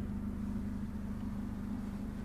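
Steady low hum inside the cabin of a Citroen C4 Grand Picasso, a constant drone with a faint hiss over it and no sudden sounds.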